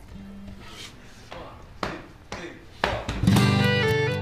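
A few sharp taps over a faint held note. About three seconds in, an acoustic guitar, violin and cajón start playing together loudly.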